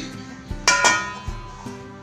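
Stainless steel plate set down over a steel mixing bowl as a lid: two quick metallic clangs about two-thirds of a second in, ringing briefly. Background music with a steady beat plays underneath.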